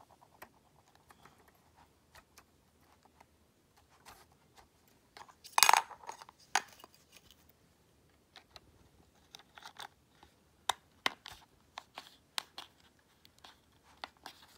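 Handling noise from reassembling a first-generation Apple Magic Keyboard: scattered light clicks and scrapes as its small parts are fitted back into the body, with one louder rustling knock about six seconds in and a few sharper clicks later on.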